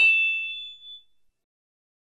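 Metallic ding from a logo-intro sound effect: a clang that rings on in two high tones and fades out within about a second.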